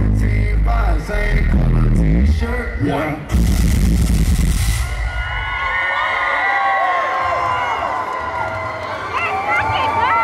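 Hip-hop track with heavy bass played loud over a concert PA, with a voice over it. About five seconds in the beat drops out, leaving a crowd cheering and whooping.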